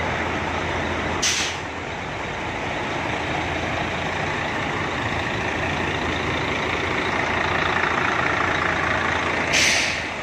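Heavy diesel trucks idling with a steady low hum, and two short, sharp hisses of truck air brakes venting: one about a second in and one near the end.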